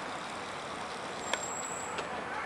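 Steady outdoor traffic noise, with one sharp click a little past a second in and a thin high whine near the end.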